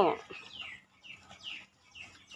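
Faint, short chirps from birds, each sliding down in pitch, about four of them in under two seconds.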